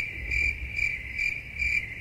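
An insect chirping on one high, steady note, about two chirps a second, over a low background rumble.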